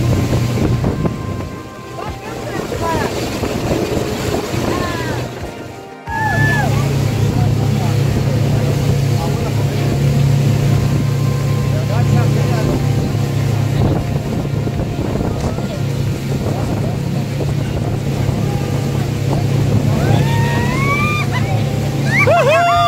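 Water taxi's motor running steadily under way, a low hum with water and wind noise on the microphone. About six seconds in, the sound dips and cuts, and after that the engine hum is louder and steadier.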